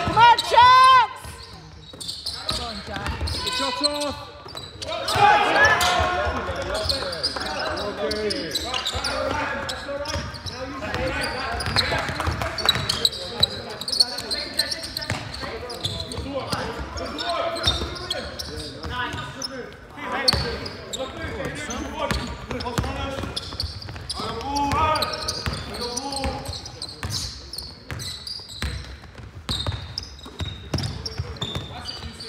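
Basketball game in a large sports hall: a ball dribbled and bouncing on the wooden court, with players and spectators shouting throughout and a loud call in the first second.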